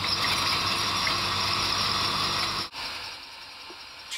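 Cordless drill boring into the wet concrete floor of a culvert pipe: a steady, high whirring hiss that cuts off abruptly after about two and a half seconds, followed by a quieter steady noise.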